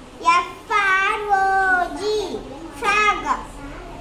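A young girl's voice reading single words aloud from a word chart, three slow, drawn-out utterances with short pauses between.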